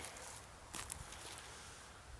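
Quiet outdoor background hiss with one brief, faint rustle a little before a second in.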